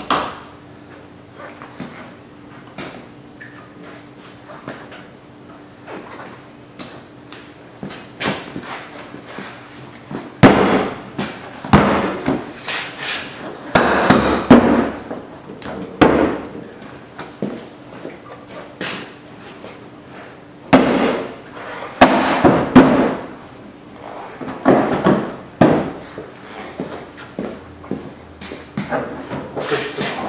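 Plastic bumper cover and its push-in retaining clips being snapped and pressed into place on a Honda Civic front end. Light clicks at first, then loud plastic knocks and snaps in two clusters, about ten seconds in and again about twenty seconds in.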